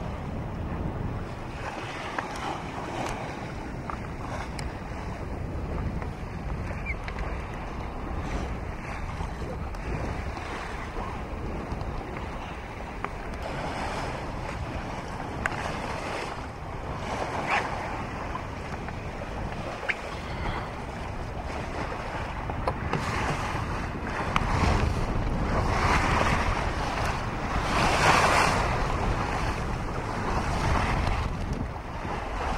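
Wind buffeting the microphone over the steady rush and splash of water along the hull of a sailing yacht under way. The water rushes louder in surges in the last several seconds.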